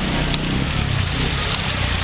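Steady splashing hiss of a decorative water curtain falling into a basin, with a low engine rumble from passing street traffic.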